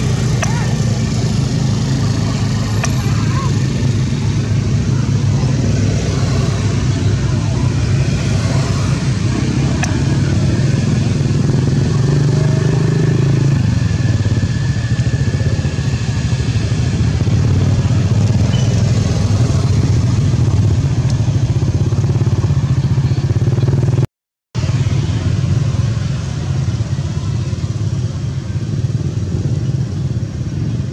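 Steady low drone of motor-vehicle engines, like motorbike traffic running continuously, with one brief dropout to silence about 24 seconds in.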